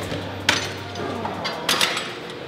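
Metal weight-stack plates of a cable machine clanking: one sharp clank about half a second in, then two more close together near the end.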